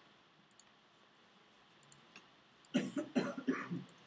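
A person coughing and clearing their throat in a short, broken run of about a second, near the end. Faint clicks come before it.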